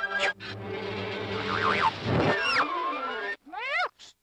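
Cartoon orchestral score mixed with comic sound effects, including pitch glides, followed just before the end by a short high cry that rises and falls.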